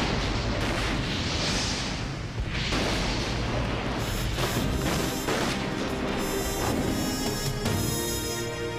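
A large explosion goes off right at the start, with a second surge of blast noise about three seconds in, each trailing off as a long rushing rumble. Orchestral score music plays under it and comes to the fore in the second half.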